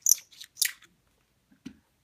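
Lyman chamfer tool scraping around the mouth of a brass .357 Magnum case, cutting it to a sharp edge: a few quick, scratchy twisting strokes in the first second, then a soft knock near the end.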